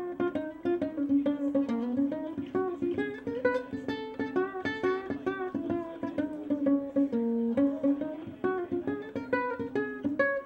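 Solo ukulele fingerpicked, a quick, busy run of single notes and chords with many plucks each second.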